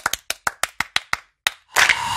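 Sound effect for an animated logo intro: a quick run of about nine sharp, clap-like clicks over a second and a half, then a rush of noise that starts near the end.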